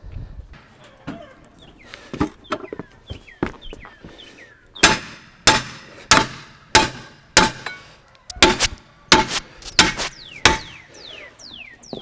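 Steel pry bar striking and levering the steel locking ring of a split rim, working the ring into its seat on the wheel: about a dozen sharp metallic clanks, each ringing briefly, roughly one every half second from about five seconds in, after a few seconds of quieter knocks and scraping.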